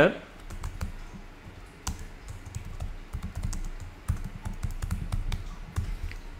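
Typing on a computer keyboard: a run of irregular key clicks as a short phrase is typed in.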